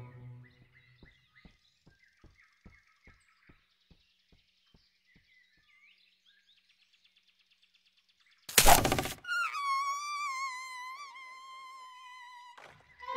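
Cartoon soundtrack: a run of soft, evenly spaced taps that fade out over about four seconds, with faint bird chirps. A little past halfway comes a sudden loud crash-like burst, followed by a high, wavering held note from the score.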